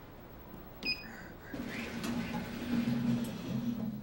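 A single short, high elevator ding about a second in, followed by a low steady hum.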